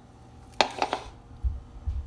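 Plastic food containers and packaging being handled on a refrigerator shelf: a sharp click about half a second in, then light rustling and low handling bumps.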